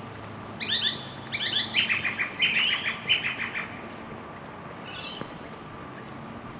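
A bird calling: a loud run of rapid chirping notes over about three seconds, then a brief fainter call near the end, over a steady low street hum.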